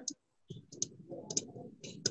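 Faint, irregular small clicks with a little soft rustle, scattered through a pause in speech.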